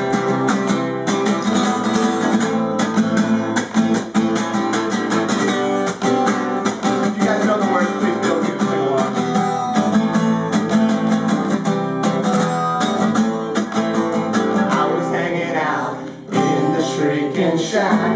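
Acoustic guitar strummed in a steady rhythm as a song's instrumental intro, breaking off briefly about sixteen seconds in. A man's singing voice comes in at the very end.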